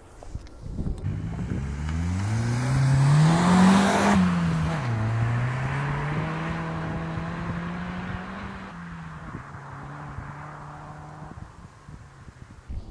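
Turbocharged 1.5-litre four-cylinder engine of a 2005 Mitsubishi Colt CZT accelerating away. Its note climbs hard to about four seconds in, drops at a gear change, then pulls up more slowly in the next gear before easing off about nine seconds in and fading with distance.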